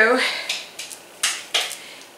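A few short rustles and scuffs of a fleece heated blanket being handled.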